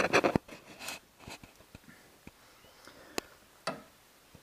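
Handling noise: rustling and scraping with scattered clicks, a quick cluster of knocks at the start and a single sharp click about three seconds in.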